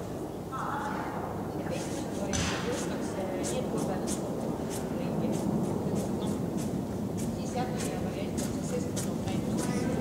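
Indistinct voices over steady reverberant hall noise, with a run of light, sharp clicks at about two a second through the second half.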